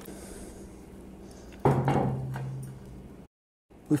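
A single clank of cast-iron cookware, a Dutch oven and its lid, ringing with a low steady tone that fades over about a second and a half. Shortly before the end the sound cuts out abruptly.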